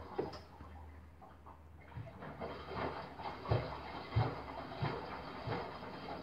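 Miele Softtronic W5820 front-loading washing machine washing: water and wet laundry sloshing and splashing in the turning drum. A low steady hum gives way about two seconds in to sloshing with dull thumps roughly every two-thirds of a second.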